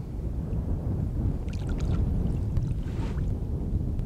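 Low, steady wind rumble on the microphone, with a few small water splashes and drips as a bonefish is held in the shallows beside the boat and lifted out, about one and a half and three seconds in.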